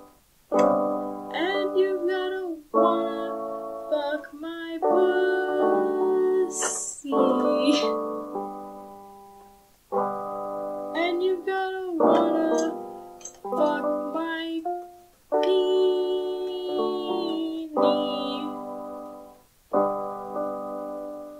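Piano playing an instrumental stretch of chords, each struck and left to ring and fade, a new one about every one to two seconds.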